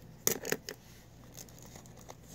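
Three quick clicks and rustles of small objects being handled close to the microphone in the first second, then a fainter click.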